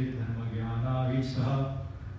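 A man chanting Sanskrit verse in a sustained, sing-song recitation on held notes, breaking off briefly near the end.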